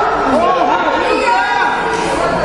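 Several voices talking at once, overlapping chatter in a large hall.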